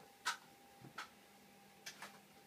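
Three sharp clicks and a soft knock as objects are handled on a workbench, over a faint steady hum.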